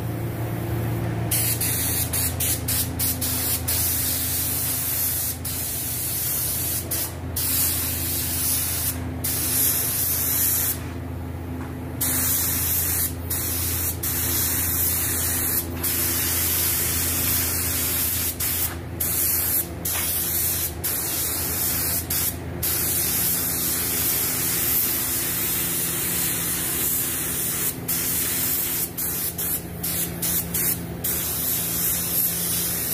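Spray gun hissing steadily as it sprays gold paint. The hiss cuts out briefly many times as the trigger is let off, with a longer pause about 11 seconds in, over a steady low hum.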